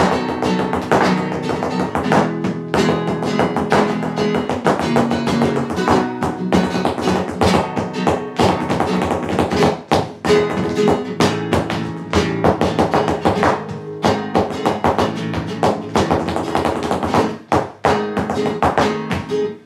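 Flamenco guitar, a nylon-string acoustic guitar played with dense runs and strummed chords, with many sharp percussive strikes throughout.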